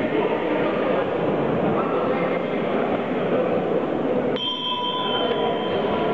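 Boxing-hall crowd chatter. About four and a half seconds in, the timekeeper's electronic round signal cuts in as a steady tone and holds for about a second and a half, marking the start of a round.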